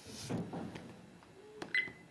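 F60 dual-camera car DVR's menu button being pressed: a faint click a little before halfway, then a short electronic beep near the end as the settings menu moves to its next page.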